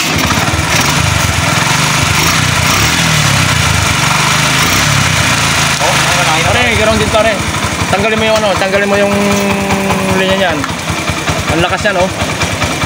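A 125 cc motorcycle engine running steadily at idle, having just been started. It is being run to test the charging system after a full-wave conversion. A person's voice rises over it from about halfway, holding one long note near the end.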